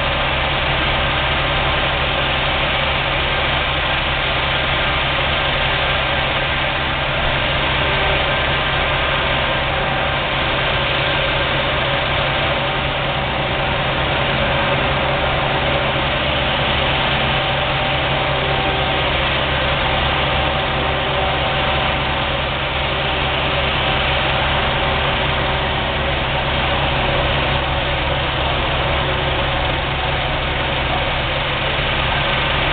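Fire trucks' diesel engines idling in a steady, unchanging drone.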